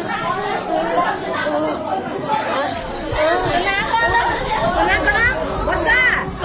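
Several people talking at once, a steady hubbub of overlapping voices in a room, with no single voice standing out.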